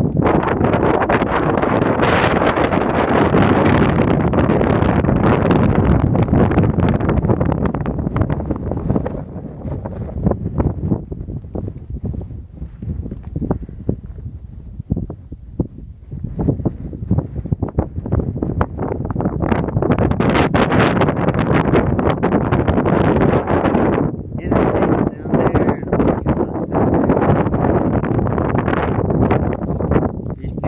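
Strong gusting wind buffeting the microphone with a heavy, low rumbling roar. It is loud for the first several seconds, eases for a few seconds around the middle, then comes back strongly in further gusts.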